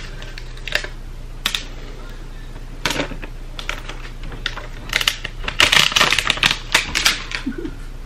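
Cardboard and paper packaging of an iPhone 12 Pro box being handled and torn open: a few sharp clicks and taps, then a dense run of crackling and tearing about five to seven seconds in.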